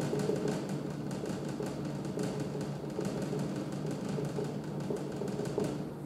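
Whiteboard marker tip tapping dots onto a whiteboard in a quick, irregular run of taps.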